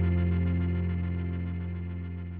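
Closing chord of a pop song, with guitar, ringing out and fading away steadily.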